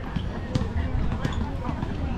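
Indistinct voices over a low rumble, with short knocks and thumps throughout.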